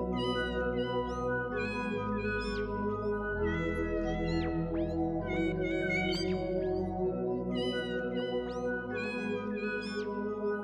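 Music with held chords, over which domestic cat meows come again and again, every second or so.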